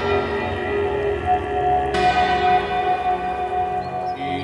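Ambient meditation music with a bell struck about two seconds in, its ringing tones layered over held notes and the fading ring of an earlier strike.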